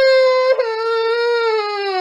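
A cartoon character's voice crying in one long, loud wail. There is a brief break and a step down in pitch about half a second in, then the held note slowly sinks in pitch.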